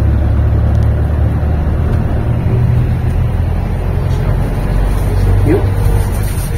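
Steady engine and road rumble of a passenger van driving, heard inside its cabin.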